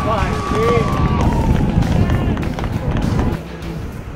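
Background music with a vocal line, its voice sliding and holding notes over a dense low accompaniment.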